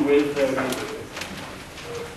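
Indistinct speech that fades out about a second in, leaving quiet room sound.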